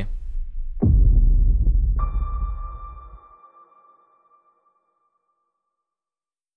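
Logo sting: a deep, low boom about a second in, then about two seconds in a ringing electronic tone that slowly fades away.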